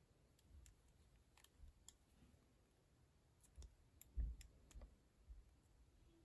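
Faint, scattered clicks and light handling noise from a metal crochet hook working through rubber loom-band stitches, with a soft low thump about four seconds in.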